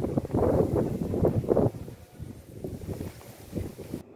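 Wind buffeting the microphone, a rough low rumble that is strong for the first second and a half and then eases to a weaker flutter.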